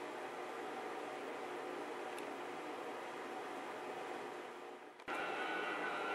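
Steady background hiss of room tone with no distinct events. It fades about five seconds in, then cuts abruptly to a slightly louder steady hiss with a faint hum.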